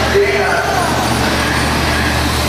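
Electric RC short course trucks racing on an indoor dirt track. A motor whine drops in pitch about a second in as a truck passes, over a steady low hum in the hall.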